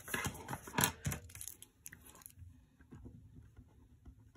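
Paper rustling and rubbing as a hand presses a sticker flat onto a planner page: a run of crackly scratches for about the first two seconds, then only faint light ticks.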